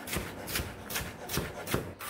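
Chef's knife julienning cucumber on a bamboo cutting board: a quick, even run of knife strokes tapping the board, about four a second.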